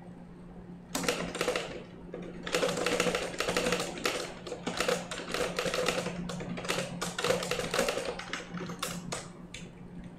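Typing on a computer keyboard: fast runs of keystrokes that start about a second in, with short pauses, and stop just before the end.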